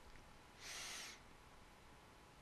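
Near silence: faint room tone, with one brief soft hiss about half a second in that lasts about half a second.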